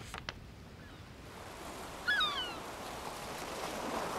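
Gentle sea surf that grows louder toward the end, with a gull giving one short call about two seconds in.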